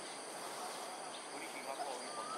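Outdoor ambience dominated by a steady, high-pitched insect drone, with a few faint chirps over it.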